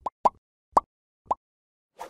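Four short rising blips spread over about a second and a half, the pop sound effects of an animated like-and-subscribe reminder graphic.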